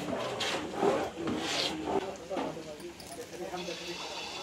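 Indistinct women's voices, with a few short scraping strokes of a ladle being worked through malpua batter in a large metal bowl.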